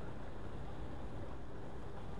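Steady low rumble of road and engine noise heard inside a moving vehicle's cabin.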